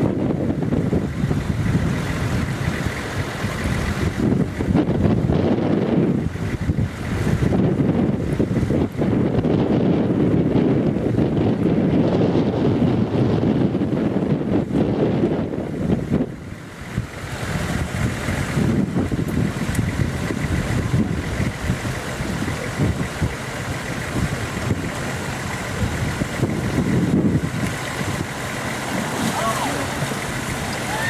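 Gusty wind buffeting the microphone, mixed with a fast river's rushing water and the engine of a Lada Niva as the car wades out into the current. The noise eases briefly about halfway through.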